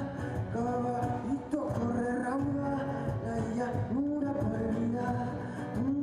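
Live concert music: a male singer's sung melody with long held notes and short upward slides, over the band.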